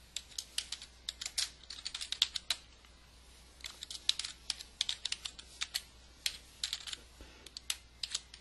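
Typing on a computer keyboard: quick runs of keystroke clicks, with a pause of about a second a little before the middle.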